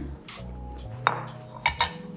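A fork clinking against a ceramic bowl: a lighter knock about a second in, then two quick ringing clinks near the end, over soft background music.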